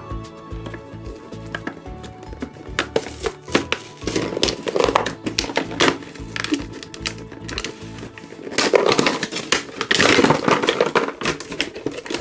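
Clear plastic blister packaging crinkling and crackling in irregular bursts as toy pieces are pulled from their tray and the tray is lifted out, loudest in the second half. Background music plays throughout.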